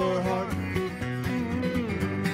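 Dobro and acoustic guitar playing an instrumental break in a country song, the Dobro's slide notes gliding between pitches over the strummed guitar.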